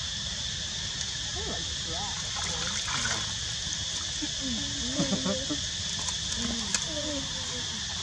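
Outdoor ambience: a steady high insect drone with scattered voices in the background, and a couple of sharp clicks about five and seven seconds in.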